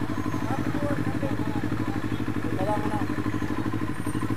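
CFMoto 400NK motorcycle's parallel-twin engine running steadily at low revs, its firing pulses coming fast and even. Faint voices are heard twice.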